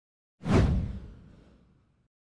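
A whoosh sound effect with a deep low rumble for a logo animation. It starts suddenly about half a second in and fades away over about a second and a half.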